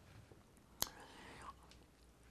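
A quiet pause in a man's talk: one sharp click a little before a second in, then a faint breathy, whisper-like murmur from him for about half a second.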